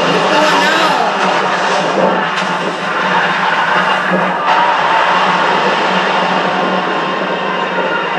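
Television drama soundtrack playing back: a dense mix of voices, music and sound effects.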